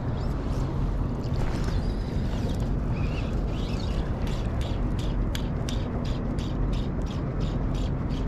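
Steady wind and water noise, and from about halfway through a run of regular sharp clicks, about three a second, from a fly reel being wound in.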